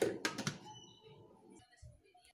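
A few quick clicks and knocks in the first half second, then faint room sound dying away.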